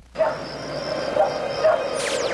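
Night-time cricket ambience: crickets chirping in an even pulse, about three chirps a second, over a low steady hum. It starts just after a brief silent gap.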